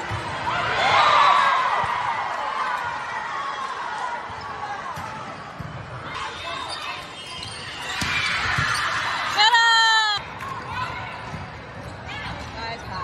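Indoor volleyball rally in a large, echoing hall: ball contacts and low knocks under crowd and player voices, which swell louder about a second in. Near the end comes the loudest sound, a sharp held tone lasting under a second.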